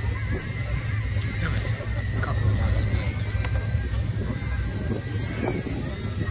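Outdoor crowd ambience at a car event: a steady low rumble with faint voices and a thin, steady high whine, with no engine revving or car passing.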